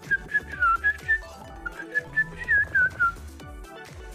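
A person whistling a short tune in quick notes, a few sliding down in pitch, over electronic background music from the slot game.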